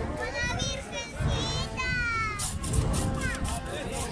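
Crowd chatter with a child's high-pitched voice calling out several times, rising and falling in pitch, over a procession band's funeral march with low drum beats.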